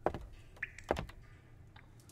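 A few soft clicks and knocks: one near the start and a couple around the middle, with quiet between them.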